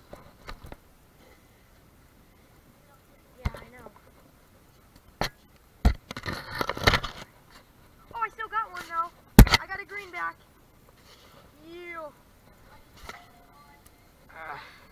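Indistinct voices, with a few sharp knocks and a brief rustling noise near the middle.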